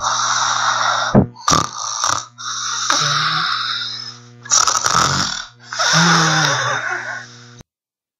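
A person snoring: four long, noisy snoring breaths, with two short snorts between the first and second.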